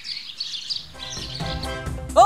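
Small birds chirping in the background. Background music with a steady low beat comes in about a second in.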